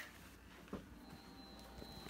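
Faint sound of a Compaq Deskpro 286 starting up just after power-on: a thin steady whine comes in about a second in, with a light click before it.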